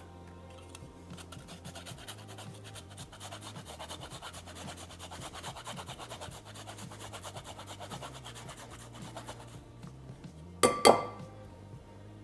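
Fresh ginger being grated on a flat metal rasp grater: rapid, even scraping strokes, followed near the end by two sharp clinks with a short ring.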